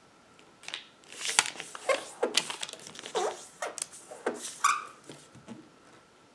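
A sheet of origami paper being folded in half and creased by hand: irregular crinkles and rustles with a few sharp creasing swipes, the loudest about a second and a half in and near the end.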